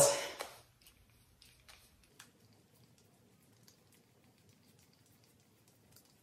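Near silence: quiet room tone with a few faint, scattered ticks in the first couple of seconds.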